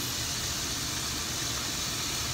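Steady sizzle of broccoli and onions cooking in butter and a little water in a frying pan.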